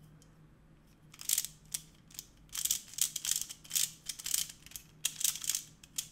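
Meffert's Hollow 2x2 plastic puzzle cube being twisted. Its layers click and rasp in a quick run of about a dozen turns starting about a second in, as a corner-swap algorithm is carried out.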